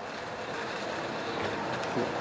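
Steady background noise with a faint steady hum, and a couple of faint clicks near the end.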